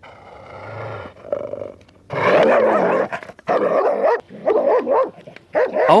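A dog growling, quietly at first, then from about two seconds in a run of loud growling barks: an aggressive provoking display aimed at another dog.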